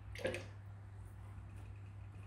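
Quiet room tone with a steady low hum, broken by one brief soft sound about a quarter of a second in.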